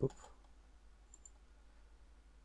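A faint, short computer mouse click about a second in, over a low steady hum.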